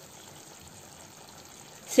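Faint, steady sizzle of mutton liver simmering in a thick masala gravy in a frying pan.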